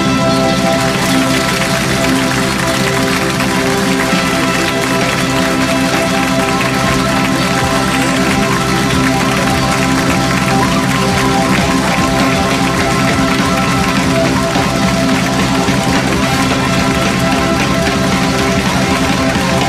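A live band playing loud, steady music, with brass, drums and electric guitar.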